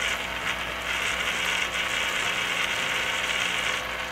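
The small water pumps of LED water-dancing speakers running, with water churning in the clear tubes: a steady whirring, rattly mechanical noise.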